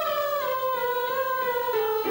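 Voices humming one long, high held note in a singing warm-up, sliding slowly down in pitch.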